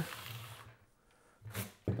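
Mostly quiet; about a second and a half in, a man takes a short, sharp breath through the nose, then starts to speak.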